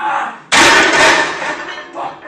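A loaded barbell crashing down onto a power rack's safety arms as a back squat fails: a sudden loud crash about half a second in, with the noise lasting about a second.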